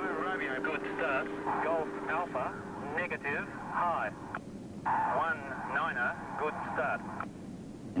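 Short spoken calls over a two-way radio, the voices thin and narrow-sounding: start-line radio calls to gliders crossing the start gate ('good start'). A steady low hum runs under the first three seconds.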